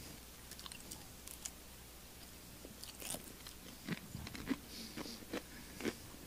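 A woman chewing a crisp communion cracker close to a handheld microphone: faint, irregular crunches, few at first and coming more often in the second half.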